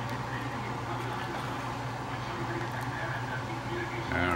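A pot of water boiling with pasta on a stove, giving a steady low hum with an even hiss over it.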